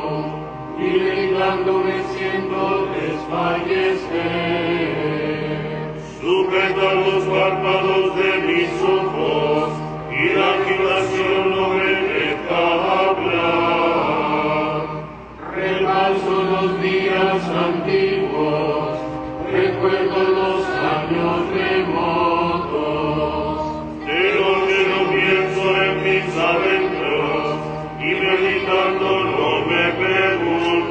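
Liturgical chant sung in phrases of about four seconds, with a short pause between each phrase.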